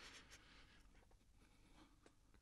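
Near silence: faint room tone with a few soft, faint rustles and ticks.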